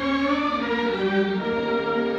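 Symphony orchestra playing, with bowed strings holding long sustained notes.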